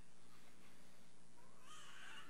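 Faint, steady room noise of a congregation getting up from the pews and moving about, with a brief faint wavering high sound, like a distant voice or squeak, near the end.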